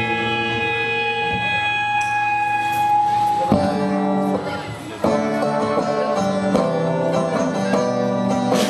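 A rock band playing live on electric guitars, bass and drums. Guitar chords ring out and hold for the first few seconds. The band then breaks into a rhythmic passage, thins out briefly a little past the middle, and comes back in full.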